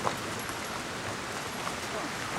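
Power wheelchair's tyres rolling over stones and dry leaves, with scattered crackles and one sharp knock just after the start, over a steady rushing background noise.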